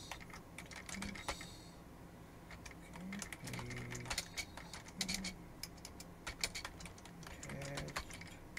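Typing on a computer keyboard: irregular runs of key clicks.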